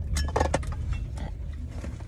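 Low, steady rumble of a car cabin on the move, with a few short clicks and rustles near the start.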